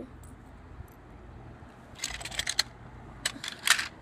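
Light clicks and rattles of small hard objects being handled: a quick cluster about halfway through, then two sharper clicks near the end.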